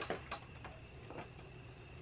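Light clicks and taps as a trophy is set against a motorbike's front number plate: two sharp clicks at the start, then a few faint ones.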